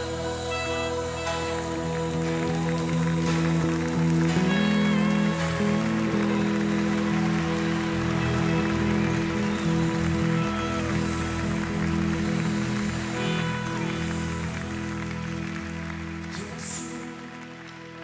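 Music from a slow Christian worship song: sustained chords with no words, getting quieter over the last few seconds.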